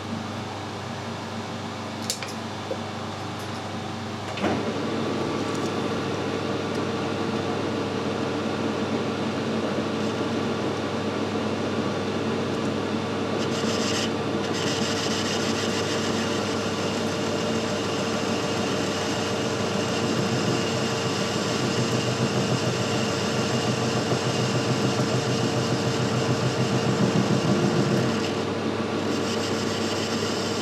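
Metal lathe starting up about four seconds in and running with a steady hum. From about halfway, the lathe tool cuts the head of a high-tensile steel bolt with a steady scraping hiss, which stops shortly before the end.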